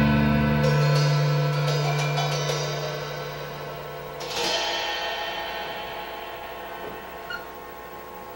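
A band of acoustic guitar, bass guitar and drum kit ending a song: the last chord rings, with several sharp drum and cymbal hits in the first few seconds and a final louder hit about four seconds in. The ringing then slowly dies away.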